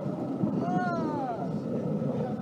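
Indistinct voices over a steady noise, with one high pitched call that bends up and then falls away, lasting under a second, about half a second in.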